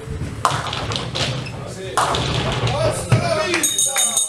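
Thuds of nine-pin bowling balls and the rumble of balls and pins on the neighbouring lanes, two strong impacts about half a second and two seconds in, under voices in the hall.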